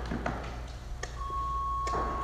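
A steady electronic beep starts a little over a second in and holds one pitch. At a weightlifting meet this is typical of the referees' down signal while the barbell is held overhead. A few faint clicks sound over the hum of a hall.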